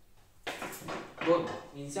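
People talking at a table, with a short burst of rustling handling noise about half a second in as things are moved around.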